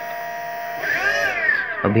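48 V BLDC e-bike motor spinning under throttle with a steady electric whine, rising and then falling in pitch about a second in. It runs smoothly without noise, the sign that the hall-sensor wires are now in the right combination.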